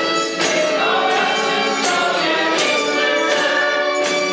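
Music: a choir singing with a tambourine struck in a regular beat.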